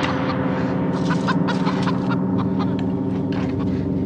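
Horror-film soundtrack: a steady, low droning hum with short chicken clucks over it.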